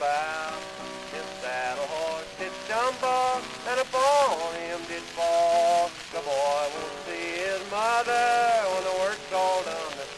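Acoustic-era 78 rpm shellac record playing old-time cowboy song music with guitar, its melody in sliding, held notes. A steady hiss and crackle of record surface noise runs under it.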